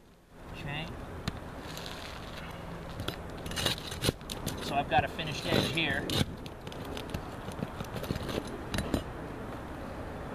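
Scraping and clinking of a metal tool worked under asphalt roof shingles, with sharp knocks as nails and a shingle tab are pried loose. The knocks are loudest and busiest in the middle.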